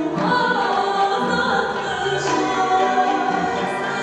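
A woman singing an Armenian gusan-style folk song, accompanied by a traditional Armenian folk instrument ensemble.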